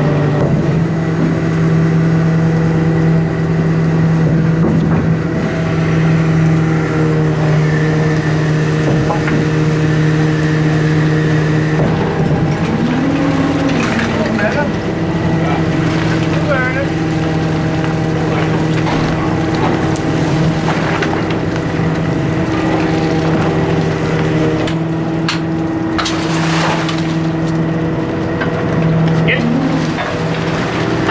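Steady drone of a fishing trawler's engine and deck hydraulics, several steady tones held throughout, while the net is hauled aboard. Scattered knocks and rattles, with a louder run of them near the end.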